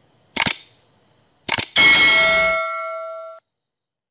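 Subscribe-button animation sound effects: a short click about half a second in, a sharp double mouse click about a second and a half in, then a bright notification-bell ding, the loudest sound here, ringing with several steady tones for about a second and a half before cutting off suddenly.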